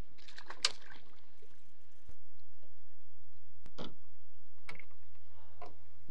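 A released pike splashing back into the river beside the boat about half a second in, over a steady low hum.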